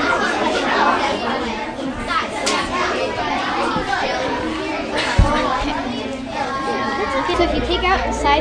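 Many children talking at once in a classroom, overlapping chatter with no single voice standing out. A single sharp thump comes about five seconds in.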